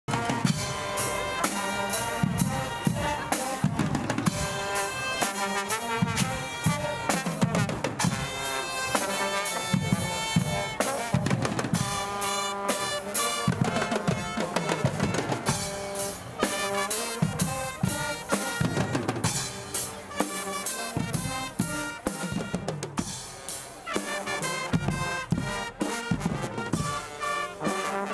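Swiss carnival Guggenmusik band playing on the march: trumpets and other brass carry the tune over a driving beat of snare drums, bass drums and cymbals, loud and steady throughout.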